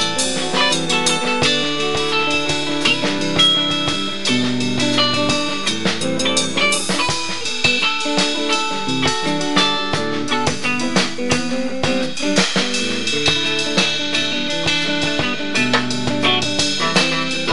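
Live band playing an instrumental passage: electric guitar over a drum kit, with a steady beat.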